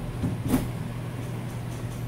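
A metal spoon clicks once against a plate about half a second in while scooping rice, over a steady low hum.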